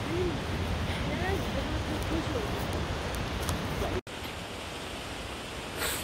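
Steady rushing outdoor background noise with a few faint, distant voices. It drops out sharply about four seconds in, then carries on a little quieter.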